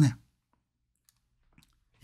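A man's voice trails off at the start, then near silence: room tone with a couple of faint small clicks around the middle.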